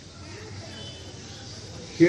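A pause in a man's speech over a microphone: low, steady background noise, with a faint distant voice early on.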